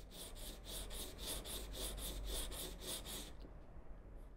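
Chip carving knife blade rubbed rapidly back and forth on 400-grit sandpaper over a glass tile while being sharpened, about five scrapes a second. The strokes stop a little over three seconds in.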